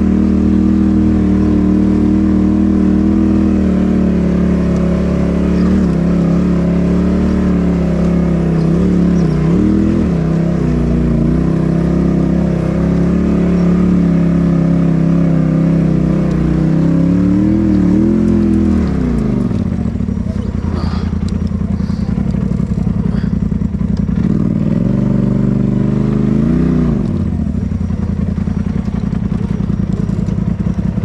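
Polaris RZR side-by-side engine running at a steady pace under the driver, heard from the cab. About two-thirds of the way through the revs drop, with a short rev-up and back off near the end.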